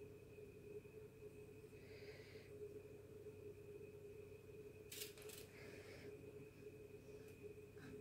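Near silence: room tone with a faint steady hum, a brief faint rustle about two seconds in and a couple of faint clicks about five seconds in.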